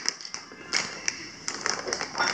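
Plastic bags crinkling and crackling as they are handled: a handful of short, sharp crackles spread through the moment.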